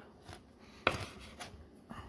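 Kitchen knife cutting through a crisp strip of smoked bacon on a cutting board, with one sharp click about a second in and a fainter one near the end.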